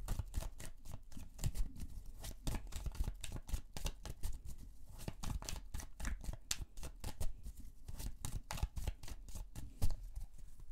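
A tarot deck being shuffled by hand: a continuous run of quick card clicks and flaps with short pauses, and a louder knock near the end.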